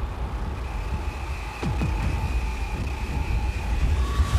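Dark cinematic background soundtrack: a deep, steady rumbling drone under two held high tones, with a short falling swoop about one and a half seconds in.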